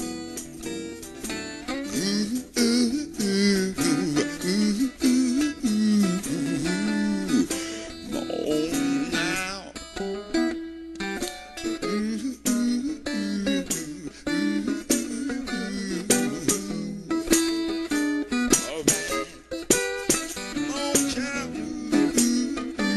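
Instrumental blues break led by guitar, playing notes that bend and slide up and down over a steady backing.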